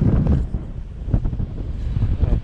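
Airflow buffeting the microphone of a paraglider pilot's camera in flight: a gusty low rumble, loudest in the first half second, easing a little in the middle and picking up again near the end.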